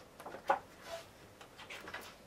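Pages of a paperback picture book being turned by hand: a few short paper rustles and soft taps, the loudest about half a second in.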